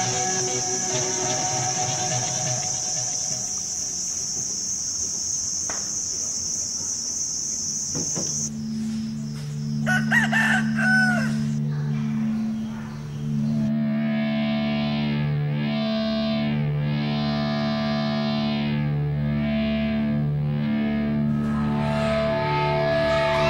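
A rooster crows about ten seconds in, the loudest sound here, after a steady high-pitched hiss that stops shortly before. A low steady drone sets in just before the crow, and music with a melody joins it from about fourteen seconds on.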